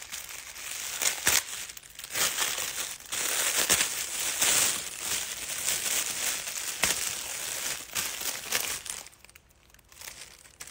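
Shiny gift-wrap paper and plastic packaging crinkling and crackling in the hands as a wrapped gift is opened, dying away about a second before the end.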